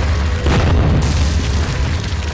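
Intro sound effect of a wall being smashed: a deep boom and crash about half a second in, over a continuous low rumble.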